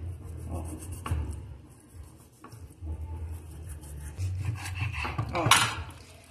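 A kitchen knife cutting and scraping raw chicken thigh meat away from the bone on a wooden cutting board. Uneven rubbing in stretches, with a couple of light knocks against the board.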